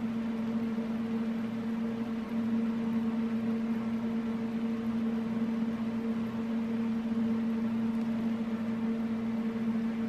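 Steady hum of a kitchen appliance's motor or fan running, with one low pitched tone and a faint regular pulsing beneath it.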